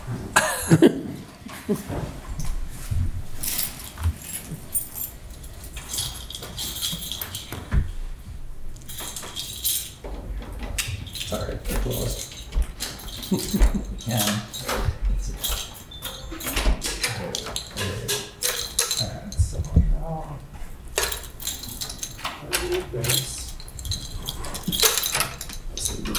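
Scattered clicks, knocks and rustling picked up by the room microphones, with muffled talk underneath.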